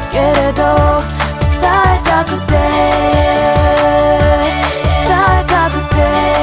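R&B-pop song with a steady kick-drum beat of about two a second under held chords. Short sung vocal runs come near the start, around two seconds in, and again near the end.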